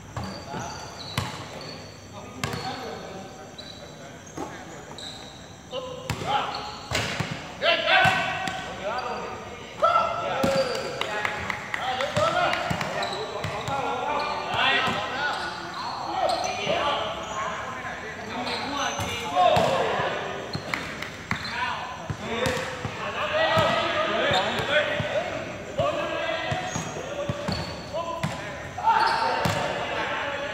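A basketball bouncing on a hard court, in uneven thuds, among players' voices that grow louder and more frequent from about six seconds in.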